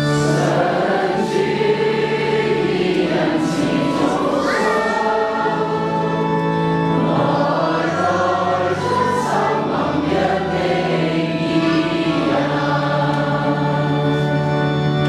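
Many voices singing a Chinese psalm response in church, in slow sustained phrases over a steady organ accompaniment.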